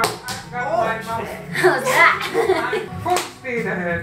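A few sharp slaps of hands patting and pressing a lump of clay down onto a pottery wheel head, bunched near the start, with one or two more later, to fix it firmly to the wheel.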